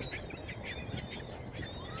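Many short, faint calls from a feeding flock of ring-billed gulls and grackles, scattered throughout, over a steady low background rumble.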